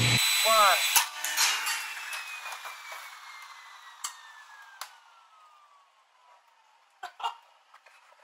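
SawStop table saw cutting out suddenly, its running hum stopping at once, with a click about a second in. A whine then falls steadily in pitch and fades over several seconds as the saw winds down, its safety brake having tripped. A few faint knocks come near the end.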